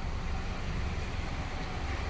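Steady low rumble and hiss of background noise inside a car's cabin, with a faint steady tone running through it.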